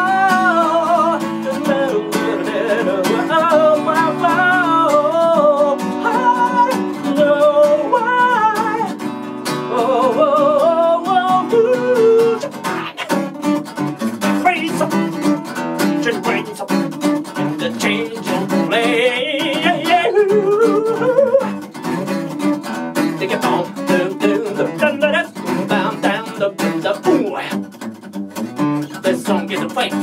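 Acoustic funk-pop music: a male voice sings a wavering melody over a Takamine DSF46C acoustic guitar. About twelve seconds in, the long held notes give way to busier, choppier guitar playing.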